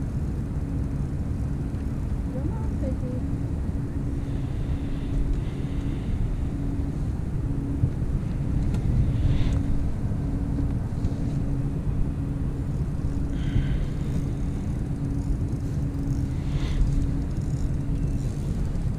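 Steady machine hum with a low rumble beneath it, holding an even pitch, with a few brief faint rustles as the landing net is handled.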